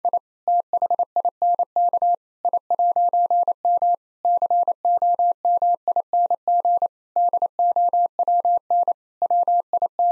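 Morse code at 28 words per minute: a single steady mid-pitched tone keyed on and off in quick dots and dashes, in groups split by short word gaps, spelling out the joke's punchline again.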